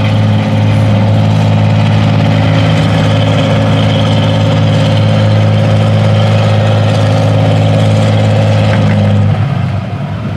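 Antique farm tractor engine running steady and loud under load while pulling a weight sled, then dropping off near the end.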